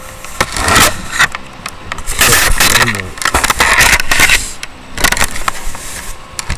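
Loud rustling and bumping handling noise, as of the microphone being rubbed and knocked by clothing or hands, coming in four bursts of scratchy noise with clicks.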